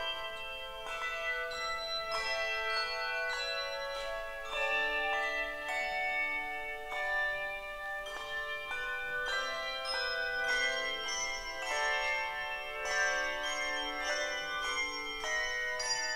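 A handbell choir playing a lively piece: many handbells struck in quick succession, their overlapping tones ringing on and dying away.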